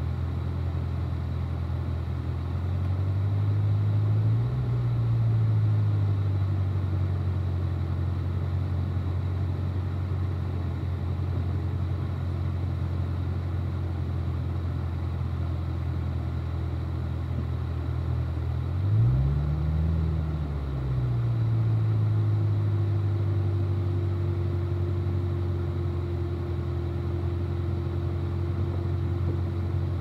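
Car engine idling at crawling speed, its revs rising briefly and falling back twice, about three seconds in and again near twenty seconds.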